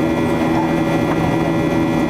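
Boeing 737-800's CFM56-7B turbofan engines heard from inside the cabin during the climb after take-off: a steady, even engine noise with several steady humming tones layered over it.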